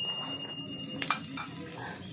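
Wood fire crackling and sizzling in a metal fire pit, offering leaves and wood burning. A high ringing tone lingers and stops about a second in, followed by a single sharp click.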